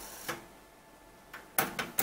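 A few short, faint clicks and taps near the end of a quiet stretch, with a soft hiss at the very start.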